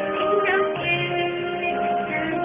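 Karaoke song: a Kumyoung karaoke backing track with a woman singing along into a microphone, holding long notes.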